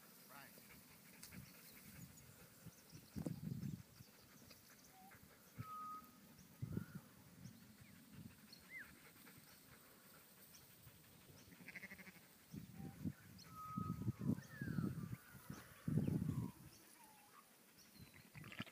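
Dorper ewes and lambs bleating, a few scattered calls at first and a denser run of bleats in the second half.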